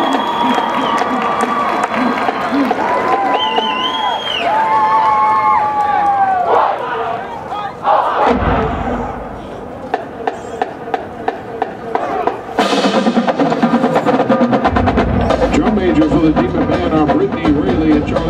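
Stadium crowd cheering and shouting, then marching band percussion: a loud hit, a few evenly spaced clicks, and from about two-thirds of the way in the drumline playing a fast, steady cadence.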